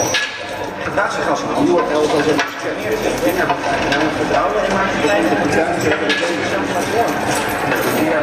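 Soundtrack of the screened film: indistinct voices over repeated knocks and clatter.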